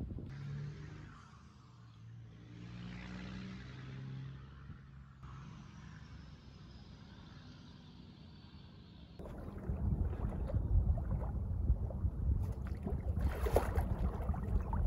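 A distant motorboat engine runs with a steady drone over the lake. About nine seconds in, gusty wind buffeting the microphone takes over, much louder and rumbling.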